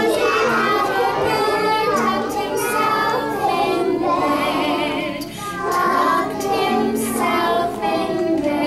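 Children's voices singing a song together in unison, with a musical backing of short steady notes underneath.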